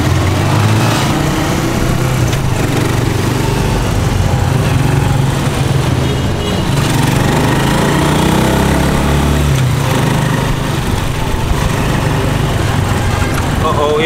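Small engine of a Rusi motorcycle pulling a tricycle sidecar, running steadily through traffic and heard from inside the sidecar, its note rising and falling with the throttle.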